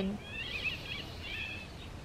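Small songbirds singing: a run of quick, high chirps lasting about a second, over a faint steady outdoor background.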